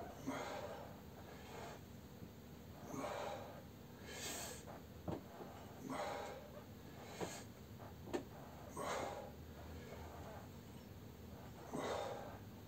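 A man breathing hard in and out, a breath every second or two, from the effort of repeated half squats, with a couple of sharp clicks about five and eight seconds in.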